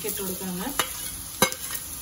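Grated coconut tipped into a hot wok of shallots, dried red chillies and curry leaves frying in oil, sizzling. Two sharp metal clinks against the pan come about a second and a second and a half in.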